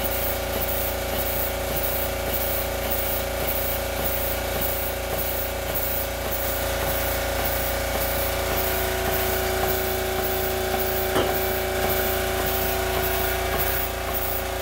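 Large twin-cylinder vertical model steam engine running steadily, with a steady hiss and hum and a faint regular exhaust beat about two or three times a second. A single sharp click about eleven seconds in.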